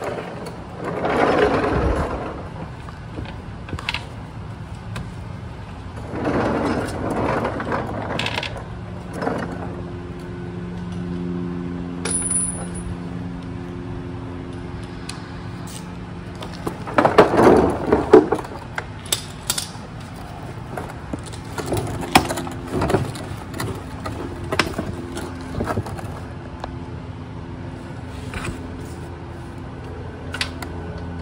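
Hand ratchet, socket and extension worked against a tight, factory-torqued transfer case fill bolt: scattered metal clicks and clanks of the tools, with a few louder bouts of scraping and rattling, the loudest about two-thirds of the way through. A steady low hum runs under it from about a third of the way in.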